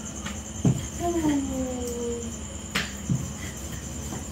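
A wooden rolling pin knocking on a wooden rolling board as a roti is rolled out: a sharp knock under a second in, another near three seconds, and a softer thump just after. About a second in there is a short voice-like sound falling in pitch, over a steady high chirring like crickets.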